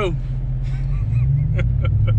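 Pickup truck engine running at low speed, a steady low hum heard inside the cab, growing a little louder partway through. A few sharp clicks come near the end.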